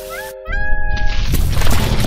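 Cartoon sound effects: a brief rising pitched call about half a second in, followed by a loud, rough rumbling noise as the destruction sequence begins.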